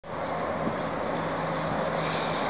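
Steady outdoor background noise: an even rushing hiss with a faint low hum under it, fading in at the very start.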